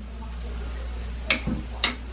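Two short, sharp clacks about half a second apart in the second half, as a wooden spoon and chopsticks are set down beside a wok of stir-fried noodles, over a low steady hum.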